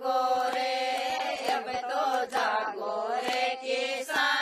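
A group of women singing a Rajasthani folk song together in long held notes, unaccompanied, with hand claps keeping time about every half second.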